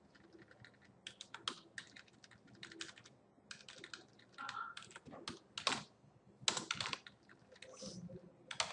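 Computer keyboard keystrokes: irregular, fairly quiet key clicks, some in quick runs, as code is edited and software screens are switched with keyboard shortcuts.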